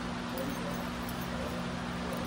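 A steady low hum of two droning tones under faint background noise.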